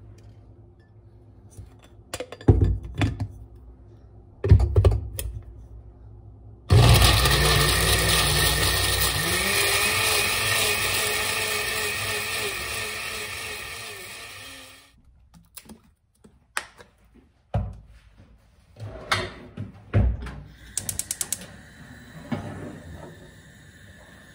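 Countertop blender with a glass jar puréeing tomato, onion, garlic and water: it starts abruptly about seven seconds in, runs for about eight seconds getting gradually quieter, then stops. A few knocks come before it and light clatter after it.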